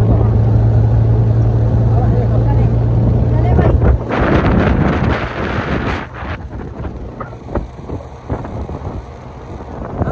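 A moving vehicle's engine drones with a steady low hum until about four seconds in. After that, wind buffets the microphone and the ride rumbles.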